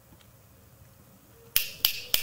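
Fingers snapping in approval, two sharp snaps about a third of a second apart near the end, after a quiet first second and a half.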